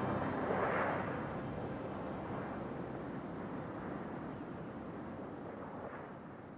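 A toneless rumbling hiss that swells briefly about half a second in, then slowly fades away.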